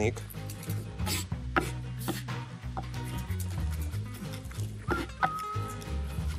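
A knife chopping garlic on a wooden cutting board: a series of irregular sharp taps, over background music.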